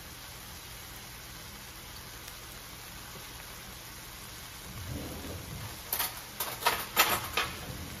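A steak searing in hot oil in a cast iron skillet, sizzling with a steady hiss. In the last two seconds sharp pops and crackles of spattering fat join in.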